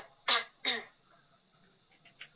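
A person coughing three times in quick succession, each cough short and a few tenths of a second apart.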